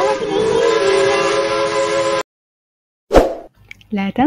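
Cartoon train whistle sound effect: a steady chord of tones with a few pitch slides, which cuts off suddenly about two seconds in. After a second of silence a single short whoosh comes in near the end.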